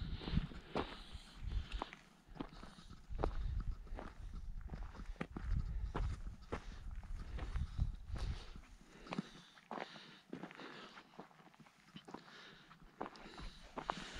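Footsteps on loose rock and gravel, an uneven step about one to two times a second, with a low rumble underneath at times.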